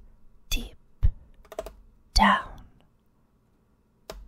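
A woman whispering a few slow words close to the microphone, with short sharp mouth clicks and breath pops between them, one word partly voiced about two seconds in.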